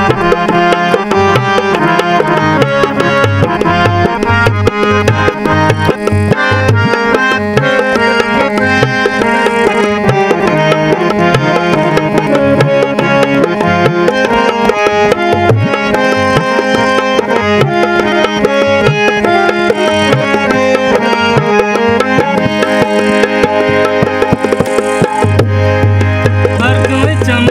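Harmonium playing a sustained reedy melody over a steady dholak drum rhythm, an instrumental passage with no singing.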